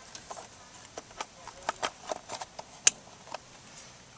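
Light plastic clicks and knocks as a relay is pushed back into a Honda Gold Wing 1800's relay box, with one sharper click about three seconds in as the relay seats.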